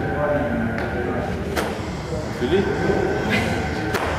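Speech in a large gym hall, with two sharp clicks, one about a second and a half in and one near the end.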